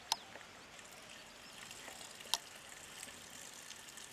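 Toddy (palm wine) pouring in a thin, faint stream from a clay pot into another clay pot. Two short sharp clicks stand out, one right at the start and one a little past the middle.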